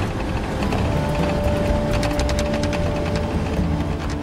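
Cab noise of a military convoy vehicle driving on a gravel road: steady engine and tyre rumble with the body rattling and clattering over the rough surface. A steady high whine comes in about a second in and fades out past three seconds.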